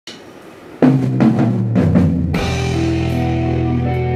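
A live rock band's drum kit plays a fill of several hits starting about a second in. At about two and a half seconds the full band comes in on a held chord with a cymbal crash.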